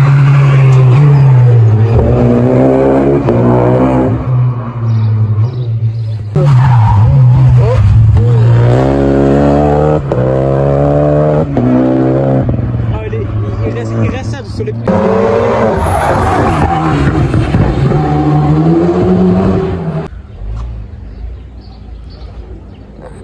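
Rally car engines run loud and hard as the cars pass. The engine note climbs and drops over and over as each car accelerates up through the gears. Several short passes are cut together, and the sound fades down near the end.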